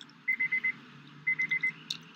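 Car's electronic warning chime beeping in quick sets of four, one set about every second.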